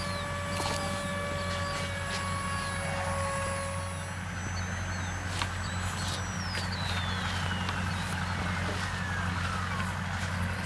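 Electric motor and propeller of a Hubsan Spy Hawk RC plane flying overhead, whining at a steady pitch for the first few seconds, then falling steadily in pitch through the second half as the throttle comes down for landing.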